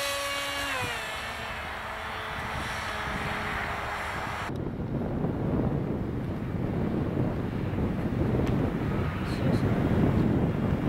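Bixler 2 RC glider's electric motor and pusher propeller whining at full power just after a hand launch, dropping in pitch about a second in and carrying on more faintly. About four and a half seconds in it gives way abruptly to gusty wind rumbling on the microphone.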